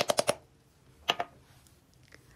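A woman's narrating voice trails off in the first moment. Then it is quiet apart from one short click about a second in.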